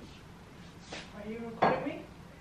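Kitchenware knocking and clinking on a counter. A fainter knock comes about a second in, then a sharp, ringing clink about a second and a half in.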